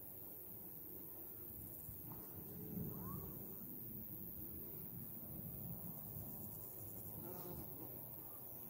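Flying insects such as bees buzzing, a faint low hum that wavers as they come and go.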